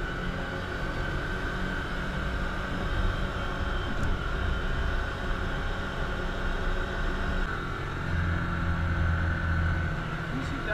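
Can-Am Commander 1000's V-twin engine running steadily under way, with drivetrain and trail noise, heard from inside the cab behind a full windshield. The engine note shifts a little about three-quarters of the way through.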